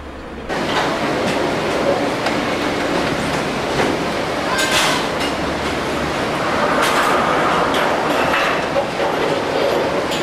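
Rumble and clatter of a skyride's gondola cabins running through the loading station, with several sharp metal clanks. It starts abruptly about half a second in.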